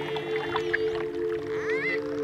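Dolphin whistles and clicks over a slow, held music chord; a rising dolphin whistle sounds near the end.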